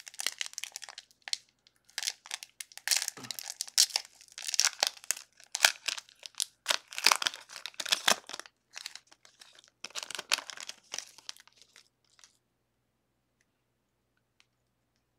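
Foil trading-card booster pack being torn open by hand, its wrapper crinkling as the cards are pulled out, in irregular bursts of crackling that stop shortly before the end.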